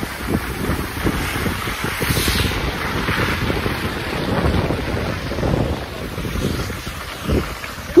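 Wind buffeting the microphone of a camera carried by a skier on the move: a gusty rushing noise that rises and falls, with a short knock near the end.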